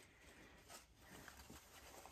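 Near silence, with a few faint, brief rustles of wired fabric ribbon being handled and wrapped around a garden-hose wreath.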